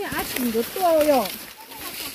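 A person talking, the voice rising and falling in pitch for about the first second and a half, then only quieter sound.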